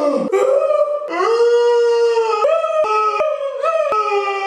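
A man's high, drawn-out wailing howl in several long held notes that slide in pitch, a mock death cry from someone playing a stabbed character.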